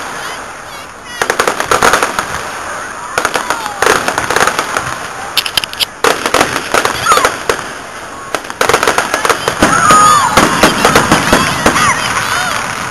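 Aerial fireworks bursting in the sky: several volleys of rapid crackling pops, each lasting a second or two, with a longer, denser volley in the last few seconds.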